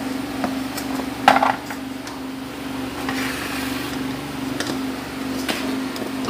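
Small plastic toy pieces clicking and clattering against each other and a plastic basket, a few scattered clicks with one louder rattle about a second in, over a steady low hum.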